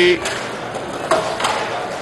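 Roller hockey play on an indoor rink: inline skate wheels and sticks on the rink floor as a steady noisy background with a few light knocks, and a brief distant shout about a second in.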